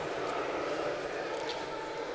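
Steady background room noise of a hall: an even hiss and hum with no distinct events.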